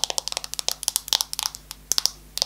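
Thin clear protective plastic film being peeled off an iPhone XS Max close to the microphone: a fast, irregular run of sharp crackles and clicks.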